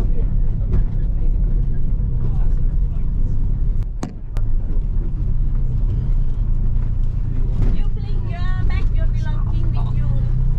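A car heard from inside the cabin while driving: steady low engine and road rumble with a constant hum. There is a short dip and a couple of sharp clicks about four seconds in.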